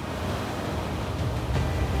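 Ocean surf washing over a rocky shore, a steady rush of water, with music underneath.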